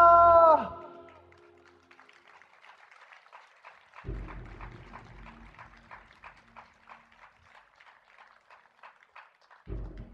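A musical number ends on a held sung note over the band, cutting off within the first second. Faint audience applause follows, scattered and thinning out, with a low thump about four seconds in and another near the end.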